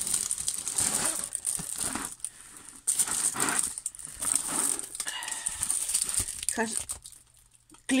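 Clear plastic film over a diamond-painting canvas crinkling and rustling irregularly as the canvas is handled, stopping about a second before the end.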